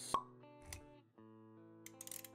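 Background music of steady held notes, with a short sharp pop just after the start and a soft low thud a little before the middle, as sound effects for animated graphics.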